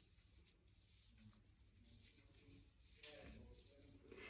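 Near silence: faint rubbing of a damp cotton pad wiped over orange peel.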